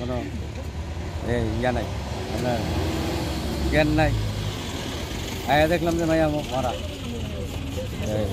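A man speaking in short broken phrases, with pauses between them. A vehicle's engine, an ambulance driving close by, rumbles past about four seconds in.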